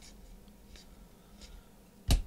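Faint sliding of trading cards being flipped through by hand, with a couple of light swishes over a low steady hum.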